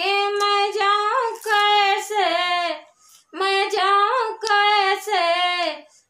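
A woman singing a Hindi Ganesh bhajan unaccompanied: two long sung phrases with held notes, with a short breath pause about three seconds in.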